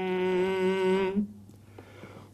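A man reciting the Quran in melodic tajweed style holds one long steady vowel for about a second. The note then fades away into a short pause.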